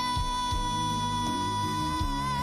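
A singer holds one long, high note steadily over a band accompaniment.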